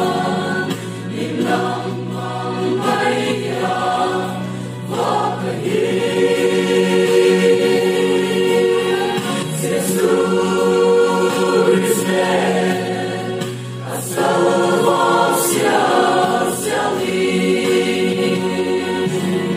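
Mixed choir of men and women singing a slow gospel song in harmony, in sustained chords with held low notes. There are short breaths between phrases about five seconds in and again about fourteen seconds in.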